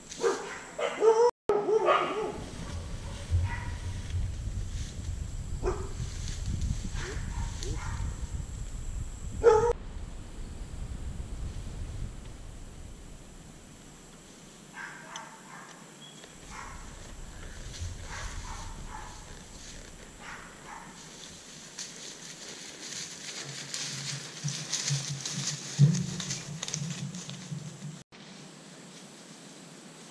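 An animal calling in a few short bursts near the start and once more about ten seconds in, over a low rumble of wind on the microphone.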